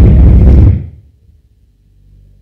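Loud, harsh, distorted noise burst from the church's microphone and sound system, overloading the audio, that cuts off abruptly under a second in and leaves only faint background. It is an audio fault in the live feed, not a sound from the room.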